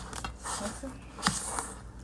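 A spoon stirring butter into sugar and flour in a stainless steel mixing bowl: soft scraping and squishing, with one sharp tap on the bowl a little after halfway.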